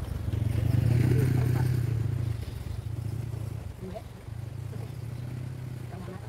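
A motorcycle passing close by, its engine loudest about a second in and then fading to a lower hum.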